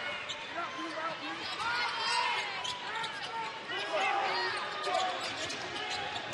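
A basketball being dribbled on a hardwood court, with short sneaker squeaks and arena crowd noise.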